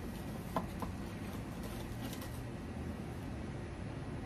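Quiet outdoor background with a steady low rumble, and a couple of soft short pops about half a second in from puffing on a corncob pipe.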